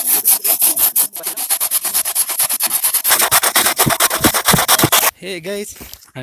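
A long knife blade sawing back and forth across a pine log in fast, even rasping strokes, several a second. A voice takes over near the end.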